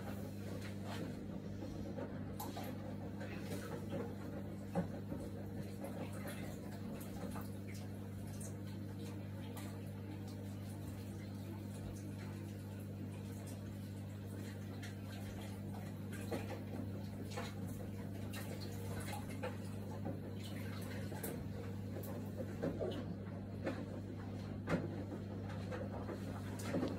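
Kitchen tap running as cut leeks are rinsed under it, faint and steady, with a few small knocks. A steady low hum sits underneath.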